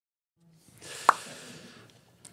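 A single sharp pop about a second in, over a faint hiss that fades away.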